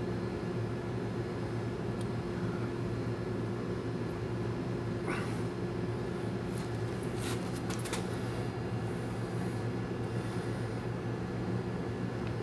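Steady low hum, with a few faint light clicks about five to eight seconds in.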